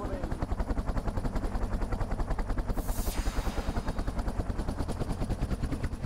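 Helicopter rotor chopping steadily at about a dozen beats a second, with a brief rush of noise about halfway through.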